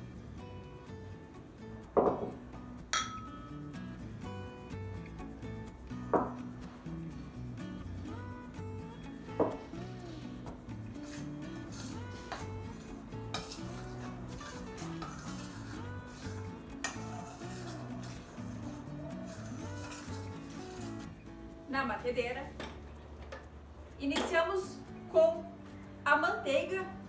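A metal spoon clinking and scraping in a stainless steel mixing bowl while dry flour and baking powder are stirred together. There are a few sharp clinks that ring briefly in the first ten seconds, the first the loudest.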